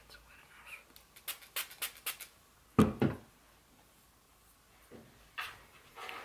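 Hand-held plastic squirt bottle spraying water in a quick run of about five short squirts, about a second in, to soak a nose strip. A single louder puff follows about halfway through.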